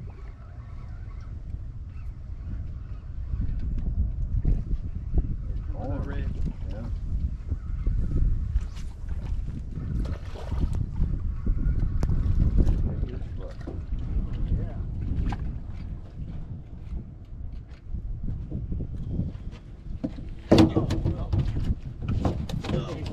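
Wind rumbling on the microphone with faint, indistinct talk, and a louder voice near the end.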